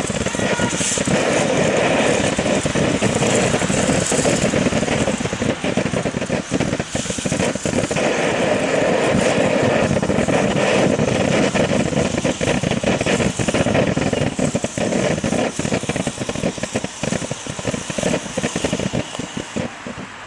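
Ground fountain firework burning: a steady, loud rushing hiss of spraying sparks, laced with dense crackling, dying down near the end as the fountain burns out.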